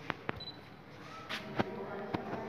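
A few sharp clicks over faint background noise: a quick pair near the start, then two more about one and a half seconds in, the last the loudest.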